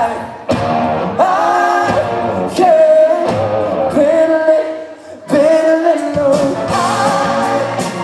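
Live pop-rock band playing, with electric guitar and drums under a male voice singing long, bending notes. The sound thins and dips about five seconds in, then comes back full.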